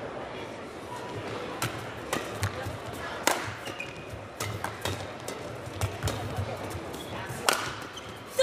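Badminton rally: rackets striking a shuttlecock in a quick, irregular exchange of about a dozen hits, over a steady murmur from the arena crowd.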